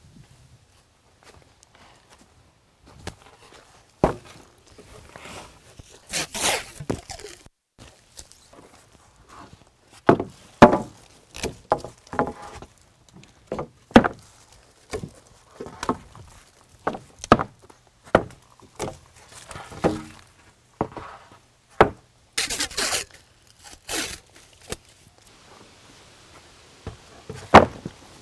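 Footsteps on dry leaves and gravel while old wooden deck boards are pulled up, carried and dropped onto a stack. There are irregular sharp wooden knocks and clatters, and a couple of longer scraping swishes.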